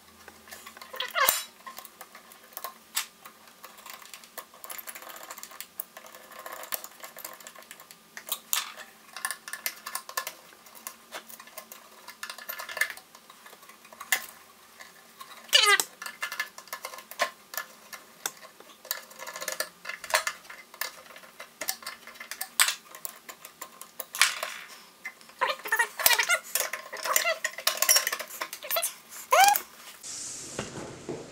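Irregular metal clicks, clinks and rattles of hand work on a Vacon CX industrial variable frequency drive: power wires being fitted and screwed into its terminal blocks and its sheet-metal cover put back on. The clicking comes in scattered clusters, busiest near the end.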